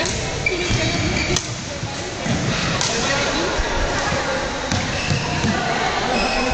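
Indistinct voices of people talking in a large indoor sports hall, with a few light knocks among them.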